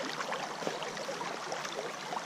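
Shallow stream running over gravel and stones, a steady rush of water with small splashes from hands and a fish held in the current.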